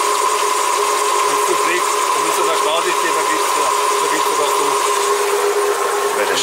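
Mercedes M113 5.0-litre V8 idling smoothly and steadily, with a constant whine running through it.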